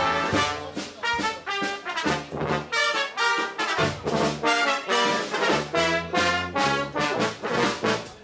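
Brass band with trumpets and trombones playing a lively, rhythmic tune of short, quickly changing notes over a bass line.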